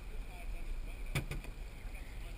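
Open-air ambience aboard a small fishing boat on the water: a steady low rumble with wind and water noise, broken by two quick knocks a little past the middle.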